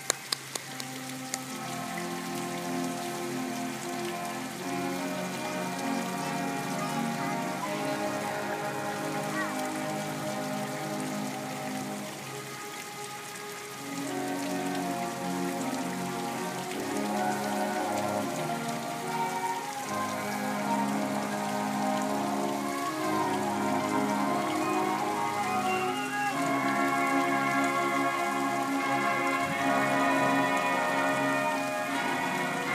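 Marching band playing a slow piece in held brass chords, the notes changing every second or two. There is a brief break about halfway through, and the playing grows louder toward the end, over a steady hiss.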